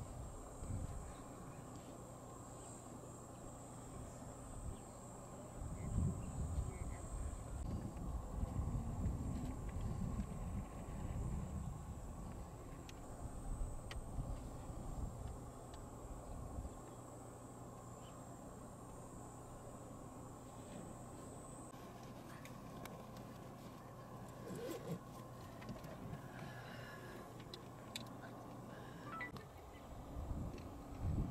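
Outdoor ambience dominated by a steady high-pitched insect drone that stops about seven seconds in and returns for a while later, over a low rumble that swells for several seconds in the middle and a faint steady low hum; scattered faint clicks near the end.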